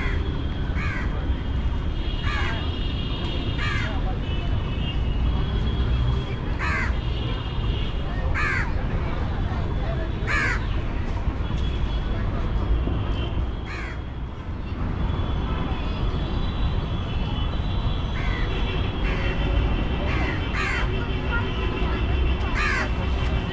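Crows cawing repeatedly, one harsh falling caw every second or two, with a pause of a few seconds midway, over a steady low rumble of outdoor city ambience.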